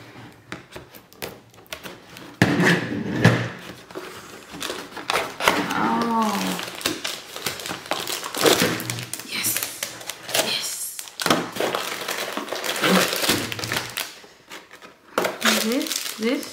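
A cardboard toy box being cut open with scissors and unpacked: irregular snips, clicks and thunks, with cardboard and plastic packaging rustling and crinkling.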